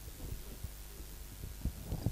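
Steady low electrical hum through the public-address system, with two dull low thumps near the end as the microphone is handled.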